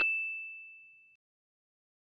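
A single bright chime-like ding from a logo animation's sparkle sound effect: one high ringing tone fading out over about a second.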